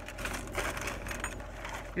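Plastic shopping bag and packaging rustling and crinkling as items are rummaged through, a dense run of small crackles.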